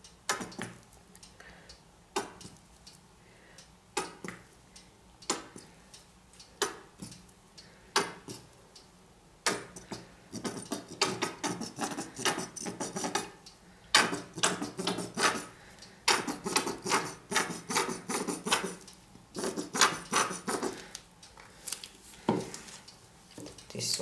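Plastic squeeze bottle of acrylic paint being squeezed out over a canvas: single sharp crackling squirts about every second and a half at first, then quick clusters of sputtering crackles from about halfway in, as the bottle runs empty and spits air with the last of the paint.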